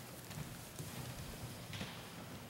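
Faint footsteps of a person walking across a hard floor: irregular soft thuds with a brief shoe scuff near the end.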